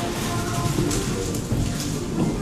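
A large red ball rolling across a wooden enclosure floor as a black-footed ferret pushes it, making a steady rumbling hiss with no knocks.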